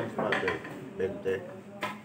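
Sharp clicks of pool balls striking one another and the cue ball being hit, a few separate knocks, the last just before the end the sharpest, with low voices murmuring around them.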